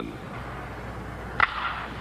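A single sharp crack of a pitched baseball's impact about a second and a half in, over steady background hiss and hum; the pitch ends in an out.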